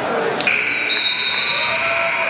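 Scoreboard buzzer sounding, starting abruptly about half a second in and holding one steady tone, as the match clock runs out to zero. Voices from the crowd are under it.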